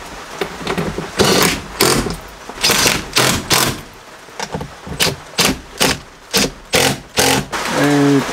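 Ratchet wrench driving a seat-mounting bolt: a series of short clicking strokes, spaced out at first and then coming quicker, about a dozen in all.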